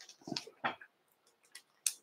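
Light handling noises from fly-tying materials being moved by hand: a few short clicks and rustles in the first second, then one sharp click near the end.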